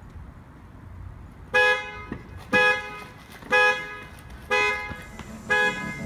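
Car horn honking five times in an even rhythm, about once a second, the repeating pattern of a car alarm going off.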